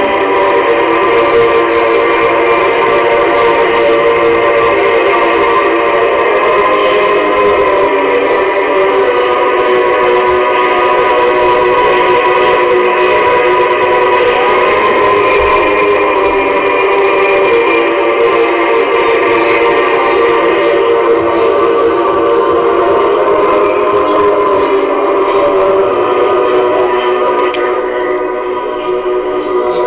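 A loud, dense wall of many overlapping sustained tones, like many horns sounding at once, forming a steady, dissonant drone.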